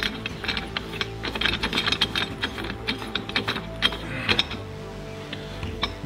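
Car lift arm's screw-adjustable pad spun by hand on its threaded post, its threads rattling with a rapid, irregular clicking that thins out about four and a half seconds in.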